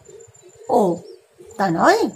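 A woman speaking in Bengali in two short phrases, over a faint steady tone.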